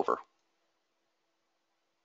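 A man's voice trailing off in the first moment, then near silence with a faint hum in the room tone.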